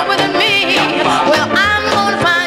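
A 1950s doo-wop single played from a 45 rpm vinyl record: a high voice sings sliding, wavering notes over a band with bass and drums.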